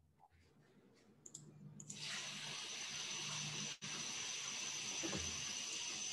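Steady hiss of a remote participant's open microphone fading in about two seconds in, with a faint high steady whine in it and a momentary dropout near the middle.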